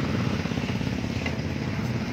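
Brother electric sewing machine running steadily, with a rapid, even stitching rhythm.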